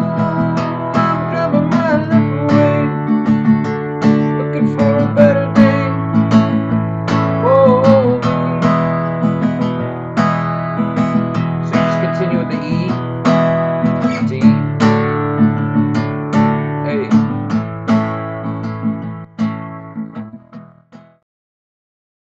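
Acoustic guitar strummed in a steady down-and-up pattern through open E, D and A chords, repeating the same chord progression. The strumming dies away about a second before the end.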